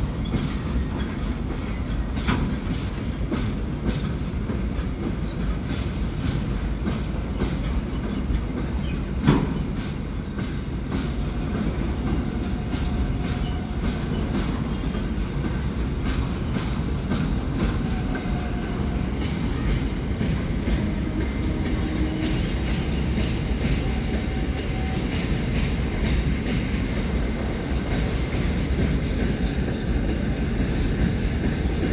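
Container freight train rolling past: a steady rumble of steel wheels on rail with faint, high-pitched wheel squeal coming and going, and one sharp clank about nine seconds in.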